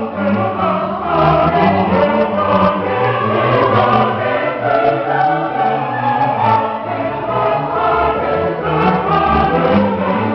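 Mixed choir singing baroque music accompanied by a string orchestra of violins, cellos and double bass.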